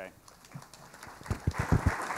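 Audience applause starting up, with a quick run of about five dull, low thuds about a second and a half in: footsteps on the stage.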